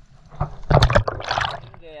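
Water splashing and sloshing close to the microphone: a burst of quick splashes lasting about a second.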